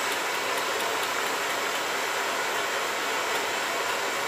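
Steady rushing hiss of a blowtorch flame heating the cylinder of a running Stirling engine.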